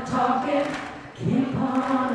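A woman's voice leading a crowd in an unaccompanied gospel song, the voices singing together in held notes, with a short breath between two phrases about a second in.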